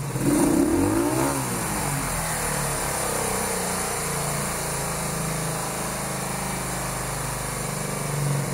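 Honda V45 Sabre's liquid-cooled 750 cc V4 engine, warmed up, is given a quick rev about half a second in, its pitch rising and falling back, then idles steadily at its normal idle speed.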